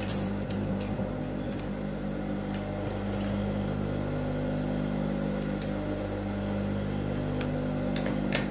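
Electric sewing machine's motor humming steadily while the machine is not stitching, with a few faint clicks from handling the fabric and scissors.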